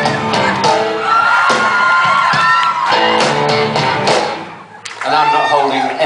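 Live rock band playing a short riff with electric guitar, a voice calling out over it in the middle. The music drops out briefly near the end and comes back in.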